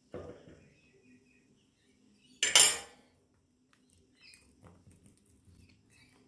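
Metal teaspoon clinking as it is handled: a short clink just after the start, a louder clatter about two and a half seconds in, then a few faint small taps.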